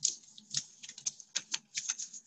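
Lined notebook paper being handled and smoothed by hands close to the microphone: a quick, irregular run of small clicks and crackles.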